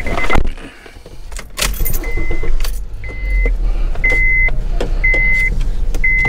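Car interior warning chime: a steady high beep, each about half a second long, repeating once a second from about two seconds in, over the low hum of the car's running engine. There are a couple of sharp thumps early on, the loudest about one and a half seconds in.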